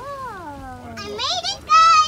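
A young girl's wordless vocalizing: one long call that falls in pitch, then quick high-pitched squeals, the last one loud and held near the end.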